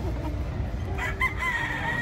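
A gamefowl rooster crowing: a short broken start about a second in, then a long held note that falls slightly in pitch, over a low steady rumble of hall noise.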